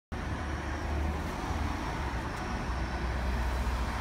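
Steady low rumble of street traffic as a diesel transit coach bus approaches along the road.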